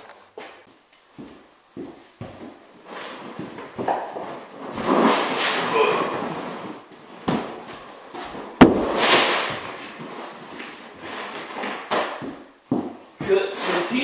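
Large sheet of vinyl flooring being lifted and handled: the stiff sheet rustles and flaps, with scattered knocks and one sharp snap just past halfway, the loudest sound.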